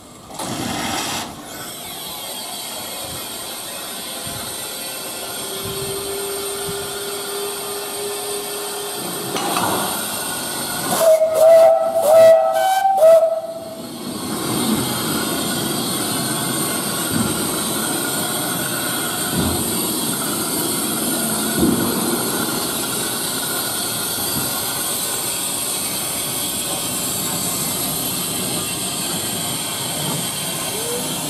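W.G. Bagnall narrow-gauge steam tank locomotive hissing steam steadily, then sounding its steam whistle in a few short blasts about 11 to 13 seconds in. The steady hiss of steam carries on afterwards as the engine moves off slowly.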